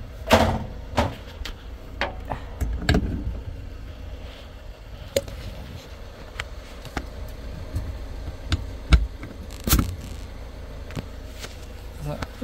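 Irregular knocks and clunks from handling on a truck's metal catwalk and its trailer air-line couplings, over a steady low hum.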